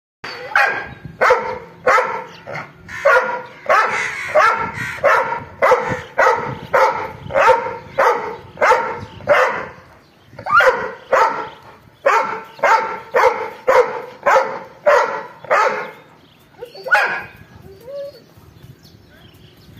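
A large dog barking angrily and repeatedly, a long run of sharp barks about two a second, with short breaks about ten seconds in and near the end.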